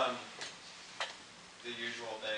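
Two sharp clicks about half a second apart, then a man's voice starting near the end.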